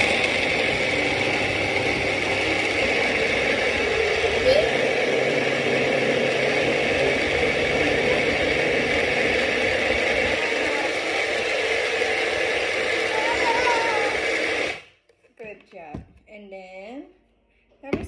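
Magic Bullet personal blender running steadily while its cup is held pressed down onto the motor base, blending a thick fruit smoothie. The motor cuts off suddenly about fifteen seconds in when the cup is released.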